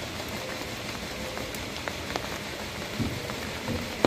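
Heavy rain falling steadily: a dense hiss with scattered close drop taps. A couple of soft low thumps come about three seconds in.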